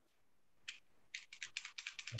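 Typing on a computer keyboard: a quick run of key clicks, starting about a second in.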